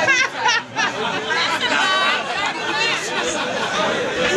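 Crowd chatter: several voices talking and calling out over one another, with no single voice clear.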